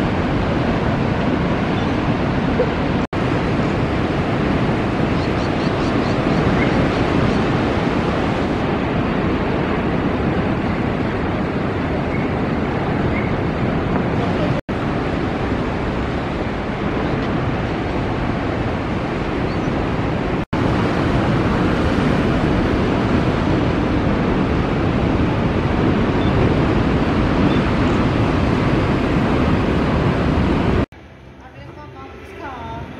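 Ocean surf breaking on a beach, with wind on the microphone, heard as a steady rushing noise. It is broken three times by brief dropouts where clips are joined.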